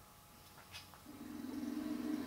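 A movie's soundtrack starting to play through the TV's speakers as the stream finishes loading: after a faint click, a steady low tone fades in about halfway through and grows louder.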